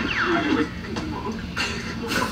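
Voices of a group of men from the video being watched, with a brief high squeal-like glide falling in pitch right at the start.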